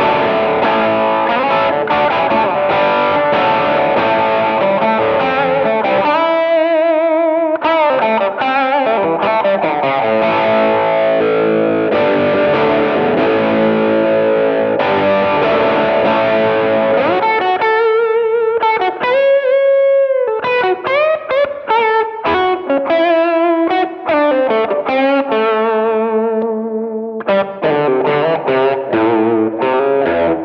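Archtop electric guitar with P90 pickups played through a DS Custom Range T germanium treble booster (a Rangemaster-style pedal) into a ThorpyFX Peacekeeper overdrive set to low gain, giving a lightly driven, edgy tone. Chords ring for the first few seconds, then it moves to single-note blues lead lines with vibrato and string bends around the middle.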